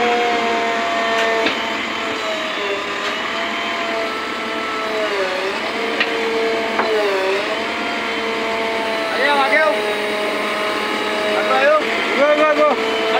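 JCB 3DX backhoe loader running with a steady whine that dips in pitch twice around the middle, as if briefly loaded, with short voices near the end.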